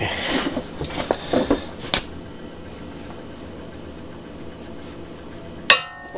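Metal clinks of a socket and long breaker bar being seated on a front brake caliper mounting bolt. After a few seconds of steady strain, a sharp metallic crack with brief ringing comes near the end as the bolt breaks loose.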